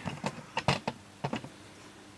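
Steel nuts and bolts clinking against each other and a metal biscuit tin as they are rummaged through by hand: a handful of sharp irregular clicks, the loudest a little under a second in.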